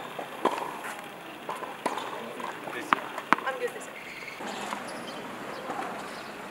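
Faint voices with four separate sharp knocks spread through the first three and a half seconds.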